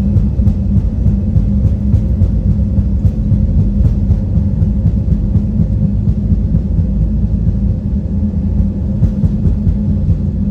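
Airliner cabin noise during taxi: a steady low rumble from the idling jet engines and the wheels rolling on the taxiway, with small clicks and rattles scattered through it.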